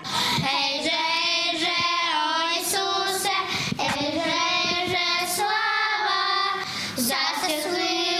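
Young girls singing a Christmas carol (koliadka) together, in long held notes with brief breaths about three and a half and seven seconds in.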